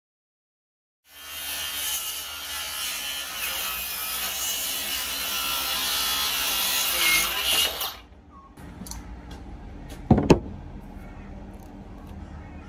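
An electric power saw cutting through the wooden cabinet of a van camper build. It runs for about seven seconds and stops abruptly, and a single thump follows about two seconds later.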